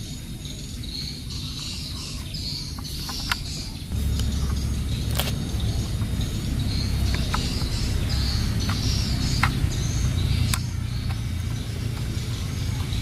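A plastic battery-powered toy steam locomotive being turned over and handled, giving a few sharp plastic clicks. Under it runs a steady low rumble that grows louder about four seconds in, with faint bird chirps.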